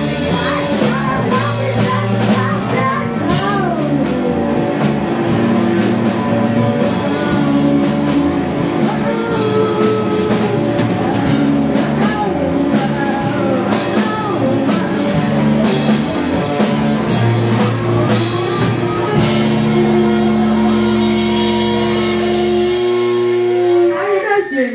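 Live rock band: a woman singing over electric guitars and a drum kit. For the last few seconds the band holds one long chord, which cuts off about a second before the end as the song finishes.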